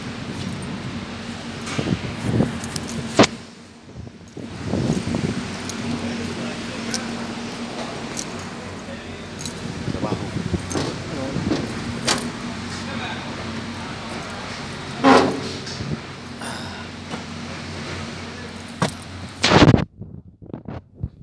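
Keys jingling, with clicks and knocks from handling around a truck cab door, over a steady low hum. There are sharp knocks about three seconds in, around fifteen seconds and just before the end.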